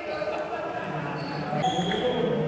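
Table tennis ball clicking off the paddles and bouncing on the table during a rally, with voices talking in a large, echoing hall.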